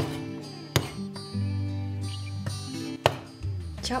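Heavy meat cleaver chopping pork spare ribs on a wooden cutting board: three sharp chops, the first two under a second apart and the third about three seconds in. Light guitar background music plays underneath.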